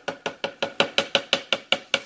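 A metal spoon tapping quickly against the rim of a plastic food-processor bowl to shake off honey: a rapid, even run of sharp clicks, about six a second.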